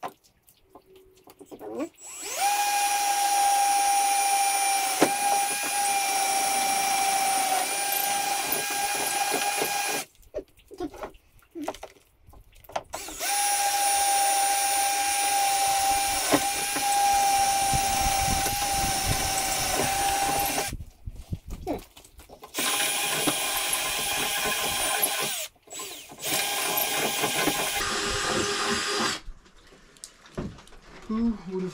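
Power drill/driver running in three long spells of several seconds each with a steady high whine, turning fasteners on a snowmobile's rear rack.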